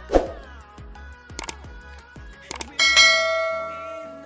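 Subscribe-animation sound effects: a falling whoosh, two short clicks, then a bright notification-bell ding that rings on and fades.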